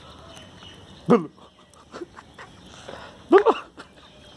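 A dog giving short barks: one about a second in, then two in quick succession near the end.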